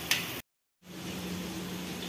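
Pointed gourd pieces frying in hot oil, a brief sizzle that cuts off suddenly into a moment of dead silence. Then a steady low hum with a faint hiss.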